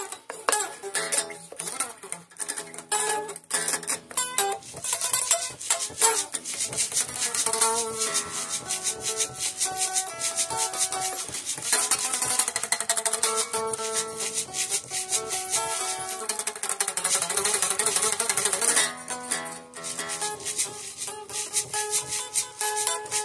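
Electric guitar of the Stratocaster type played unamplified, its strings heard acoustically with a thin, bright, scratchy tone. A blues tune mixes picked single notes and chords, turning to dense, fast strumming in the second half.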